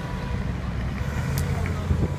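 A vehicle engine idling: a steady low rumble, with a single faint click about one and a half seconds in.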